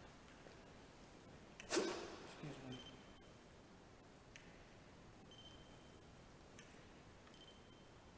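Quiet room tone with one sharp click or knock just under two seconds in, followed by a couple of faint low thuds. A short, faint high beep comes three times, about two seconds apart.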